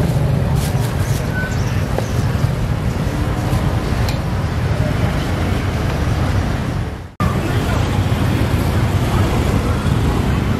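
Busy market-street ambience: motorbike and traffic noise mixed with the babble of voices nearby. The sound drops out for a split second about seven seconds in, then carries on.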